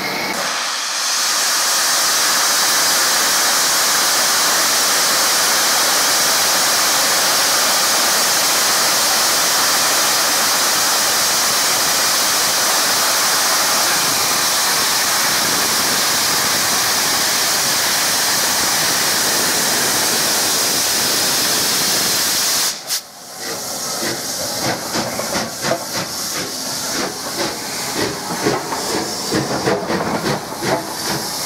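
Bulleid Merchant Navy class steam locomotive 35028 Clan Line blowing off steam in a loud, steady hiss. About 23 seconds in the hiss cuts off suddenly and gives way to a fast, uneven run of short beats.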